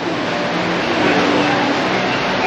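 Steady background noise of a busy indoor shopping mall, with faint distant voices in it.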